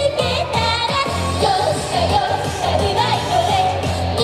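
A J-pop song through a PA speaker: female group vocals carry the melody over a backing track with a steady beat and bass line.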